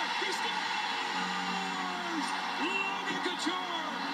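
Hockey arena crowd noise: a steady roar of many voices, with long shouts rising and falling over it.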